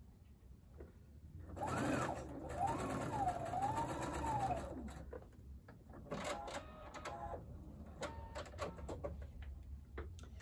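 Electric sewing machine stitching a seam through quilt-block fabric. Its motor whine rises and falls in pitch as the speed changes, and it is loudest from about two to five seconds in. After that come quieter clicks and short runs.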